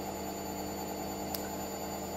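Washing machine running, a steady hum made of several unchanging tones, with one faint click about halfway through.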